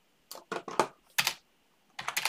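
Computer keyboard typing: about six quick keystrokes in short runs, ending about a second and a half in.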